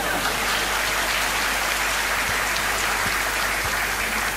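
Large seated audience applauding steadily.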